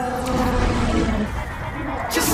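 Film soundtrack music with a deep rumble underneath and an animal-like cry. The highs thin out in the second half, before the song's beat returns.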